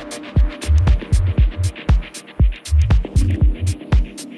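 Techno music with a steady kick drum about twice a second, a pulsing low bass line and ticking hi-hats.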